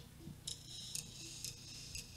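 Drumstick count-in: four faint sharp clicks about half a second apart over a low hum from the live recording.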